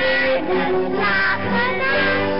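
Children singing a folk-dance song over steady instrumental accompaniment.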